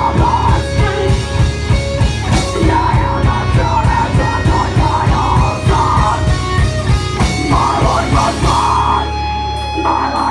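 Live heavy rock band playing loud: pounding drum kit, bass and electric guitar, with a female vocalist singing into the microphone. Near the end the drums stop and a low sustained note rings on.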